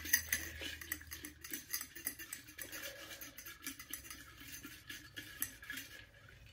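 A hand rummaging through folded paper slips in a glass jar with a wire-clasp lid: a continuous run of quiet rustles and small clicks and clinks against the glass.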